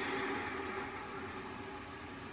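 A faint hiss with a low steady hum, slowly dying away as the tail of a louder sound fades out.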